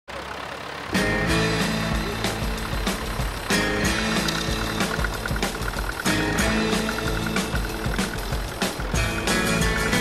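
Background music with a steady beat, starting about a second in.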